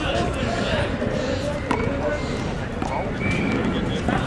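Voices talking at a distance over a steady outdoor city rumble. A little before halfway through there is a single sharp knock: a rubber handball bouncing once on the concrete court.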